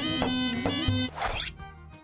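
Instrumental intro jingle: a held reedy wind-instrument note over a steady drone, cutting off about a second in, followed by a short rising whoosh transition effect.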